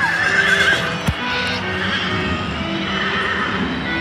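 A horse whinny played over loudspeakers, a wavering call lasting under a second at the start, over steady background music. A single sharp knock about a second in.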